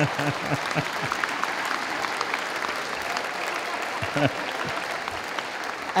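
Audience applauding, with a few voices heard briefly through it.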